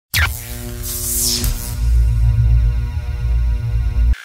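Intro theme music for a show's opening logo sting, with heavy sustained bass and held tones, and a whoosh sweeping across the top about a second in.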